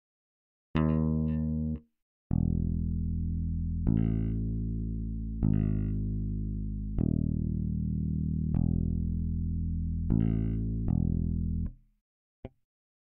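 Sampled electric bass in Reason (Reason Electric Bass) playing a slow line of sustained low notes with no drums. One short note sounds about a second in, then after a brief gap the line runs on, changing note about every second and a half, and stops just before the end.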